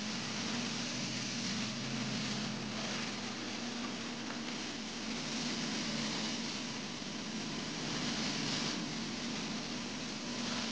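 Steady rushing hiss of truckmount vacuum suction and hot-water spray through a Zipper SS spinner carpet-cleaning wand being worked over commercial carpet, with a steady low hum underneath.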